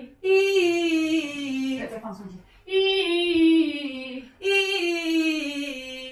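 A woman's voice singing a vocal exercise: three held vowel tones, each under two seconds long and sliding downward in pitch. It is a drill for letting the breath drop and relaxing the voice.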